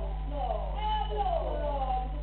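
Several people talking at once over a steady low hum, with one high voice drawn out in a long rising-and-falling call about a second in.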